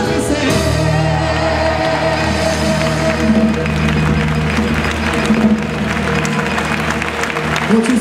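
A man singing live into a microphone, his voice bending through long held notes, over Spanish guitar and hand-drum percussion.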